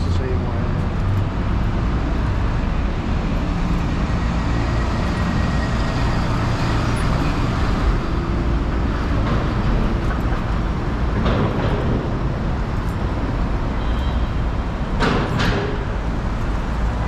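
City street ambience: a steady rumble of road traffic, with passers-by talking now and then.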